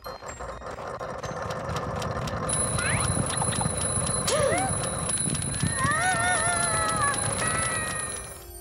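Cartoon sound effects over music: a busy rumbling clatter that builds in loudness, with high, squeaky, gliding cartoon calls from about three seconds in.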